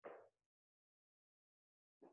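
Near silence, with one faint, short sound right at the start.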